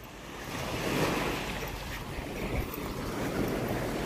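Small waves breaking and washing up on a sandy shore, with wind buffeting the microphone; the surf swells about a second in, then runs on steadily.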